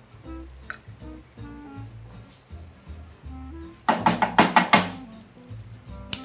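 Soft background music with a quick clatter of a metal kitchen utensil against cookware about four seconds in: a rapid run of sharp clinks lasting about a second.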